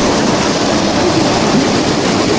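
River rapids rushing over rocks close by: a loud, steady rush of whitewater.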